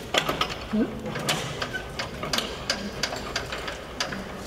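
Irregular metallic clicks and ratcheting from a hand tool working the bomb rack fittings on a jet's wing pylon as a bomb is secured.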